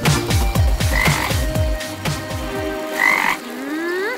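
Cartoon frog croaking: a run of about eight low croaks, each dropping in pitch, roughly three a second, for the first three seconds. A rising whistle-like glide follows near the end.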